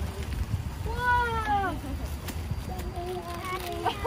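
A young child's drawn-out, high-pitched call about a second in, its pitch sliding slightly down. A second, lower and steadier call is held near the end, over a low car-engine rumble.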